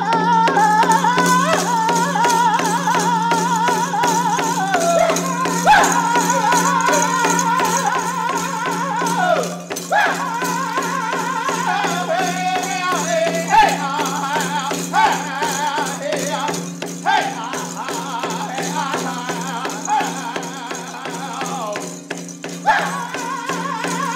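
Blackfoot chicken dance song: a man singing in a high, wavering voice over a steady, fast hand-drum beat.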